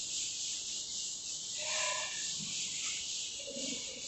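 Chalkboard being wiped with a duster, a soft steady hiss. A short animal call sounds about two seconds in and a lower call near the end.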